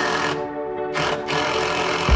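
Background music with held notes, over which a cordless drill runs in short irregular bursts as it drives screws into a wooden picnic-table frame.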